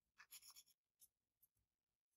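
Faint scratching of a fine-tipped pen marking a line on a white board sheet along a steel ruler: a quick run of short strokes, then a couple of light ticks.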